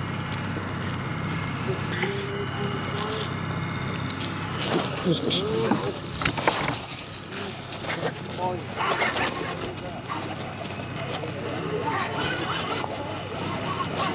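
A boat motor drones steadily and low, with brief muffled voices in the middle.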